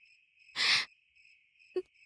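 Crickets trilling steadily. A short breathy burst, the loudest sound, comes just over half a second in, and a brief smaller one comes near the end.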